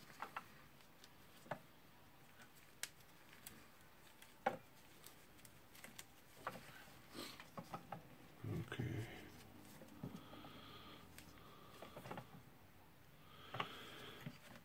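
Faint, scattered clicks and light taps of plastic parts and wire leads being handled and pressed into place inside an opened cordless circular saw's plastic housing, with a slightly louder patch of handling noise a little past halfway.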